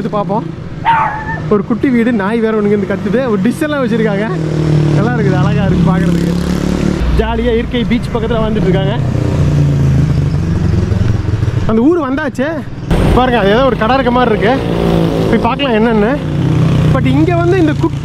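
People talking over the steady running of a vehicle engine while riding along a road.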